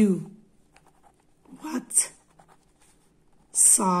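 A pen writing by hand on lined notebook paper: faint, short scratches of the strokes between spoken words.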